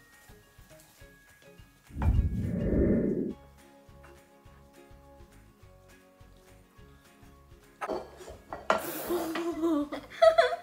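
Faint background music with held notes. About two seconds in, a loud, muffled low-pitched noise lasts about a second, and near the end girls break into laughter.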